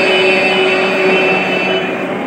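A group of male and female voices singing together into microphones, holding a long sustained note that fades near the end.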